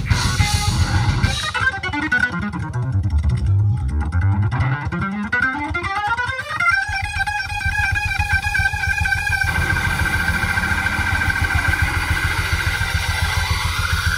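Live rock band playing keyboards and bass guitar over a pulsing low end. A lead line sweeps down in pitch and back up, then holds a long note.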